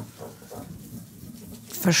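A metal spoon spreading egg mixture across a sheet of yufka pastry: a soft click, then quiet scraping. A woman's voice starts near the end.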